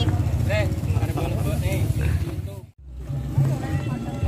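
A low, fluttering outdoor rumble under faint voices of people talking. It breaks off in a sudden, brief dropout about three quarters of the way through, then resumes.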